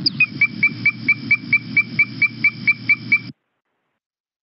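Strecker's chorus frog calling: a fast, even series of clear, bell-like whistled toots, about five a second, over a low background rumble. The call cuts off suddenly near the end.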